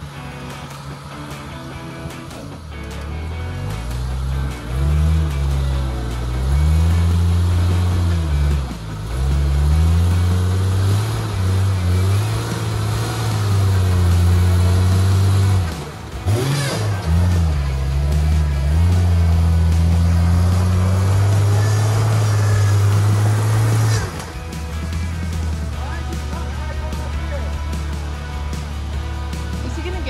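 Rock buggy engine revving up and down over and over as the buggy works at a rock ledge. Near the end it drops back to a steadier, lower running.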